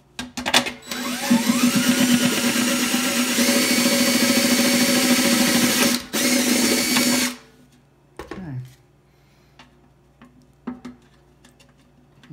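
Cordless drill with a step drill bit widening a hole in the thin steel side of a paint can. It gives a couple of short starts, then runs steadily with the bit grinding through the metal for about seven seconds, with a brief break near the end. A few light clicks and knocks follow.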